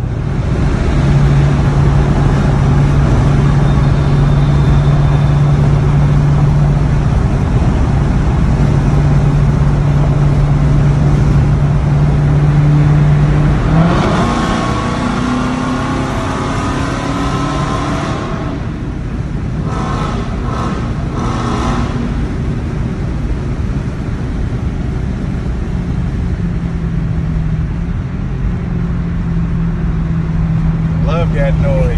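A Mopar muscle car's engine and exhaust heard from inside the cabin. It drones steadily at cruise, then about fourteen seconds in the throttle is opened and the revs climb hard, echoing off the tunnel walls. A few brief surges follow around twenty seconds before it settles back to a steady cruise.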